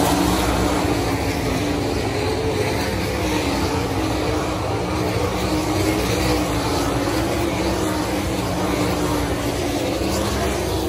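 410 sprint cars racing on a dirt oval, their methanol-burning 410-cubic-inch V8 engines running hard as the field laps, a steady, wavering drone of several engines at once.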